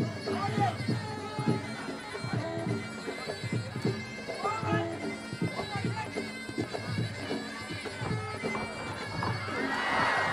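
Traditional muay Thai fight music (sarama): a reedy Thai oboe (pi) playing a wavering melody over steady drum strokes, with crowd noise beneath.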